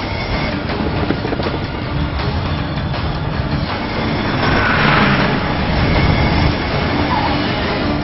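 Loud, dense vehicle noise mixed with music, with a brief louder noisy swell about halfway through.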